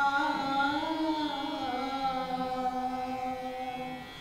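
A woman singing an Indian patriotic song, her voice gliding between notes and then holding one long note through the second half.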